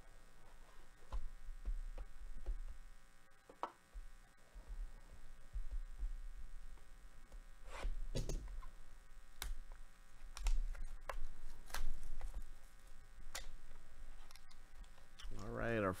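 Trading-card box packaging handled and torn open by hand: scattered crinkles, clicks and taps of cardboard and plastic wrap, over a low steady hum.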